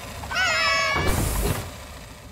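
A cartoon pet creature's short, high, cat-like cry, about half a second long with a wavering pitch, followed by a brief rushing noise.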